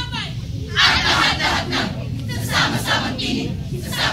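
Many young voices shouting words together in unison, part of a Filipino choral recitation (sabayang pagbigkas), in three or four loud bursts starting about a second in.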